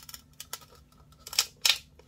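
A small hand tool working along the open seam between a violin's top and ribs as glue is worked into the joint: a few light clicks, then two short, sharp scrapes about one and a half seconds in.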